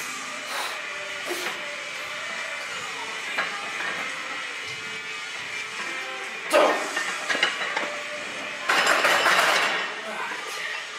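Pop music from the gym's sound system playing low during a barbell front-squat set, with a sudden loud burst of noise about six and a half seconds in and a loud hiss about a second long near the end.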